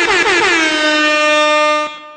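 Air horn sound effect: one long, loud blast that wavers at first, then holds a steady pitch and cuts off suddenly near the end.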